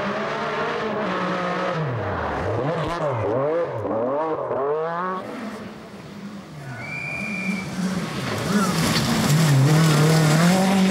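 Group B rally cars (an MG Metro 6R4, then a Lancia Delta S4) driven flat out on a gravel forest stage, engines revving up and down through rapid gear changes. There is a run of quick rising shifts about three to five seconds in. The sound drops away briefly, then grows louder near the end as another car comes close. A short high whistle-like tone sounds about seven seconds in.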